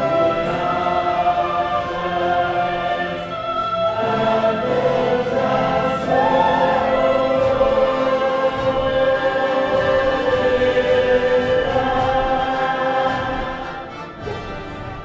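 Musical-theatre cast singing together in chorus, in an operatic style, with one long held note through the middle.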